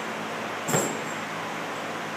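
Steady hissing background noise, with one sharp knock about three quarters of a second in.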